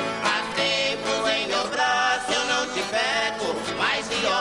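Sertanejo raiz song: a male voice singing with vibrato over ten-string viola caipira accompaniment.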